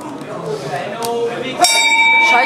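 Brass boxing-ring bell struck once, about one and a half seconds in, then ringing on with a steady tone: the signal for the round. Voices in the hall come before it.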